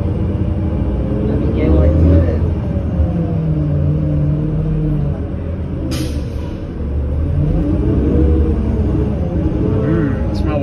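Cabin sound of a New Flyer C40LF bus under way, its Cummins Westport ISL G natural-gas engine and Allison transmission running with a pitch that rises and falls as it drives. A short air-brake hiss comes about six seconds in.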